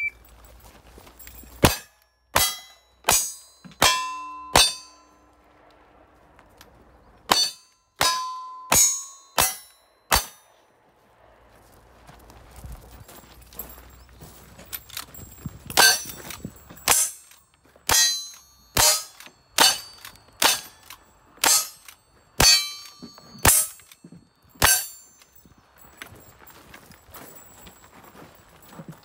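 Gunshots at steel targets in a cowboy action shooting stage, with the steel ringing after many hits. Two quick strings of five shots come in the first ten seconds, then after a pause a longer, steadier string of about a dozen shots, roughly one every half second to second.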